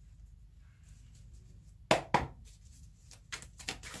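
A deck of tarot cards handled on a table: two sharp taps about a quarter second apart near the middle, then faint light clicks of cards.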